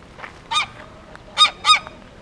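Domestic goose honking: three short honks, one about half a second in and two close together near the end.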